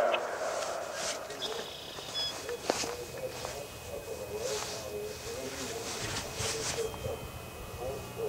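Pause between voice announcements of a Federal Signal Modulator 6024 electronic siren. A faint, distant voice continues the test message, likely from other sirens farther off, and there is hiss from the siren's drivers, which the recordist suspects are partly failing.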